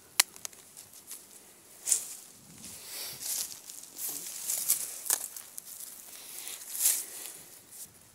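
A small mobile phone hits the ground with one sharp knock at the start, then dry grass and dead leaves rustle in scattered bursts as the phones are picked up and handled.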